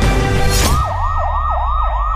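Intro music that breaks off with a short rush of sound about half a second in, followed by a fast yelping police-style siren sound effect that sweeps up and down about four times a second over a low rumble.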